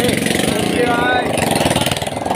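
Several people talking over a steady, rapid mechanical buzz.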